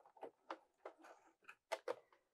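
A few faint, separate clicks and taps from working at a computerised sewing machine as a zigzag seam on knit fabric is finished, the loudest a close pair near the end.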